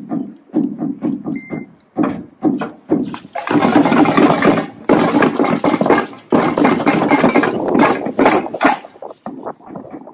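A group of children beating drums: a few separate strokes at first, then, about three seconds in, a loud, fast, continuous drumming din with a brief break, dying back to scattered beats near the end.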